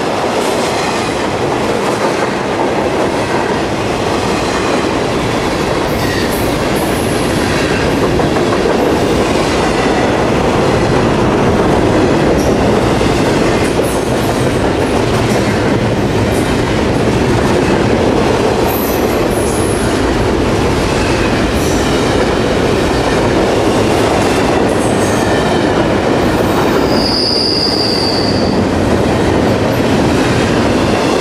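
Double-stack container well cars rolling past close by, a steady rumble and clatter of steel wheels on rail. A brief high wheel squeal comes near the end.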